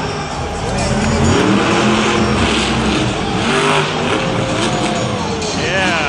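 Monster truck engine revving up and down several times as the truck drives across the dirt and hits a pair of junk cars, over arena crowd and PA noise.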